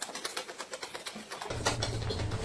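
Rapid wet tongue clicks and mouth noises, about ten a second, from a man flicking his tongue. A low hum comes in about one and a half seconds in.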